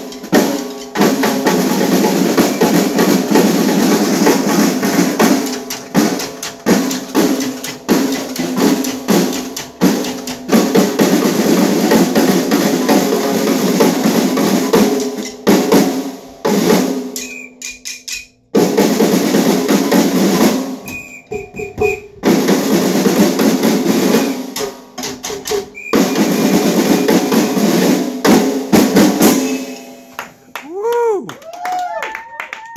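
Several snare drums and a drum kit played together by a drum group, with fast rolls and accented strokes in unison. The playing breaks off twice briefly about halfway through, then carries on.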